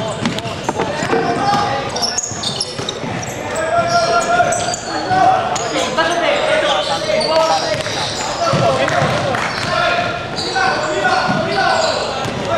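A basketball game in a large gym: a basketball bouncing on the hardwood court as it is dribbled, with players' shoes and voices on the court, all echoing in the hall.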